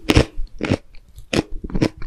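A mouthful of fruit-shaped jelly candy being chewed with the lips closed: four sharp crunches, about one every half second.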